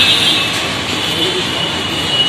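Steady outdoor background noise with indistinct voices.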